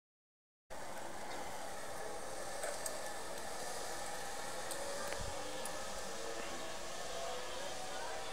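Steady outdoor background noise, an even hiss with a few faint clicks, starting just under a second in.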